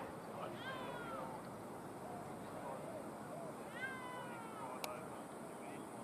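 An animal calls twice. Each call is a drawn-out cry that falls in pitch: the first comes under a second in, the second about four seconds in. A short sharp click follows just after the second cry.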